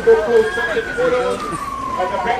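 A siren wailing in one slow sweep, its pitch peaking about half a second in and then falling steadily, under people's voices.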